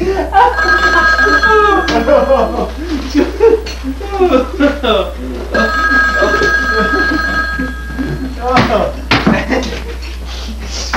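Telephone ringing twice, each ring a steady two-note sound of about two to three seconds, with a pause of a few seconds between. People are laughing and talking loudly over it.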